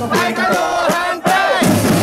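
A crowd of demonstrators shouting a chant together over a street drum group of snare drums and bass drums. The shouting breaks off briefly just past halfway and starts again.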